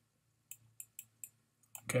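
Four light, sharp clicks about a quarter of a second apart, with a couple of fainter ones after: a stylus tapping as a short note is handwritten on a screen.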